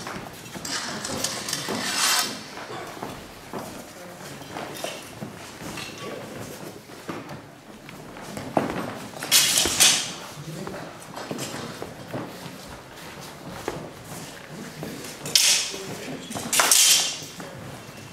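Longsword sparring: feet shuffling and stepping on a wooden floor, with scattered knocks. There are loud, sharp bursts about nine seconds in and twice near the end.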